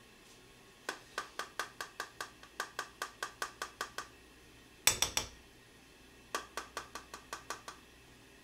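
A small perforated seasoning shaker being shaken over a spoon, clicking about four times a second in two runs, with one louder clatter about five seconds in.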